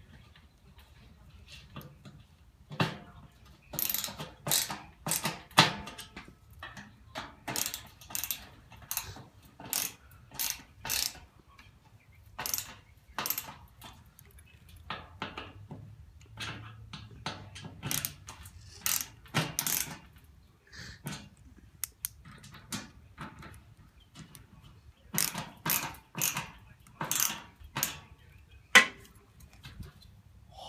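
Hand ratcheting screwdriver clicking as screws are tightened into a metal grill bracket, in runs of a stroke or two a second with short pauses.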